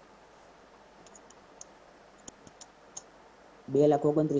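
Several faint, quick clicks of a computer mouse, scattered over a couple of seconds.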